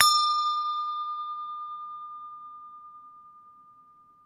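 Notification-bell sound effect: one bell strike that rings on and slowly fades away, its higher overtones dying first.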